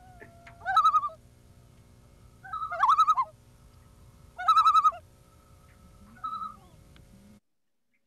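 Common loon tremolo calls: four quavering bursts about a second and a half apart over a low steady hum. The sound cuts off suddenly near the end.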